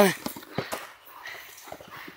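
A few soft crunches in the first second, then faint rustling, as snow is packed down under a child shifting on a plastic saucer sled.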